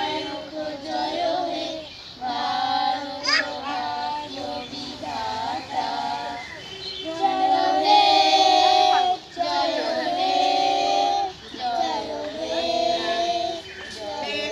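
A group of children singing a prayer song together, some notes held for a second or more.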